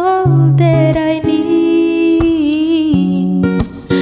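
A woman singing a slow ballad melody to her own acoustic guitar accompaniment, two held vocal phrases with a short break between them near the end.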